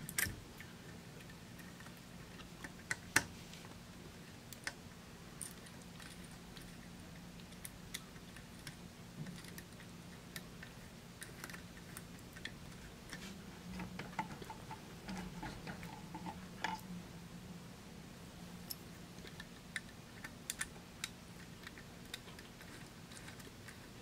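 Small screwdriver clicking and scraping on the screw terminals of an MKS Gen L controller board as the heated-bed wires are screwed down: faint scattered clicks and ticks, with one sharper click about three seconds in.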